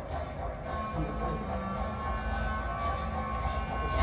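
Experimental electronic sound-art piece played over speakers: a low, steady rumbling drone with thin, held high tones joining it about a second in.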